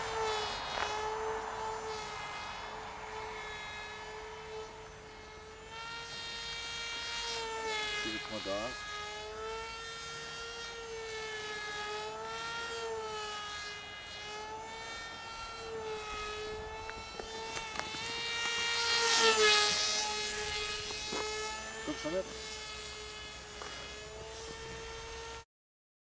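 Electric motor and propeller of a Hacker SkyCarver RC flying wing under power: a steady whine whose pitch wavers gently up and down, swelling loudest about twenty seconds in. It cuts off abruptly just before the end.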